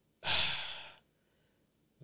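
A person's single breathy sigh, one exhale lasting under a second.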